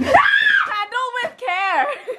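A woman shrieking in fright: one long high scream that rises and falls near the start, then two shorter shrieks, broken with laughter.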